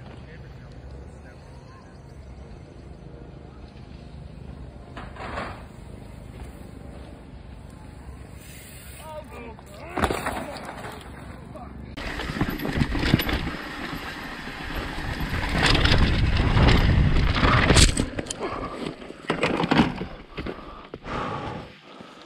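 Wind buffeting a helmet-mounted camera and a mountain bike's tyres running over dry dirt, growing to a loud rush on a fast descent. Near the end comes a burst of knocks and scraping as the rider crashes in the dirt.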